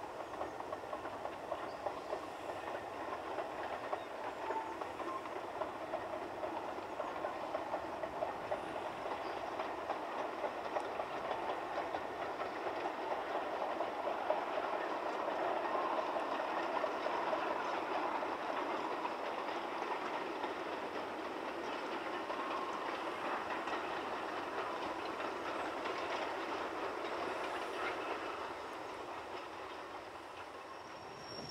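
A long train of narrow-gauge wagons rolling downhill, with a steady rattling clatter of wheels on the rails. The clatter grows louder towards the middle and eases off near the end.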